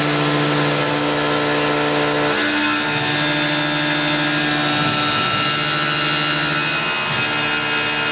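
Tormach PCNC 1100 CNC mill cutting 6061 aluminium with a 3/8-inch two-flute carbide end mill under flood coolant, the spindle at 2800 RPM. A loud, steady cutting sound of several held tones, whose tone shifts about two and a half seconds in and again near seven seconds as the cut changes.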